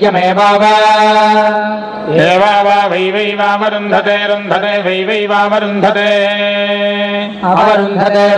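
Male voices reciting Vedic chant (Veda parayanam) on a steady, near-monotone pitch. Long vowels are held for more than a second at a time, with a short break and an upward swoop in pitch about two seconds in.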